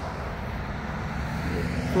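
Steady low rumble of outdoor background noise, like road traffic, with no distinct events.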